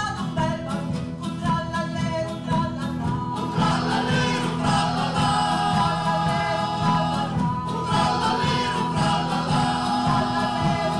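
Men's choir singing in several-part harmony, accompanied by strummed acoustic guitars in a steady rhythm.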